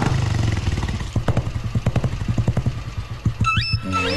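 Motorcycle engine running with a steady low putter of quick, even firing strokes. Near the end a short rising tone cuts in.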